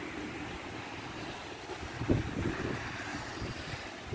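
Wind buffeting the microphone: a steady rushing noise with an uneven low rumble and a stronger gust about two seconds in.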